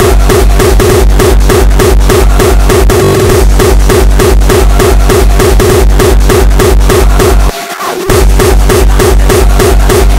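Uptempo hardcore electronic music: a fast kick drum at about four beats a second under a pulsing synth line. The kick drops out briefly about three quarters of the way through, then comes back.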